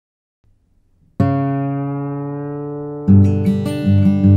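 Guitar music: a chord is struck about a second in and rings out, slowly fading, then a louder, rhythmic passage with a picked low line starts about three seconds in.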